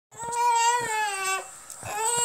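Toddler crying: one long wail that sags slightly in pitch, about a second long, with a second cry starting near the end.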